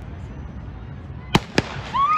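Starting pistol fired to start a 100 m sprint: two sharp cracks about a quarter second apart.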